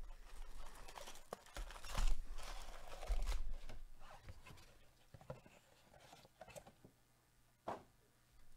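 Plastic-foil trading-card pack wrappers crinkling as the packs are lifted and handled, loudest about two seconds in, then quieter, with a sharp click near the end.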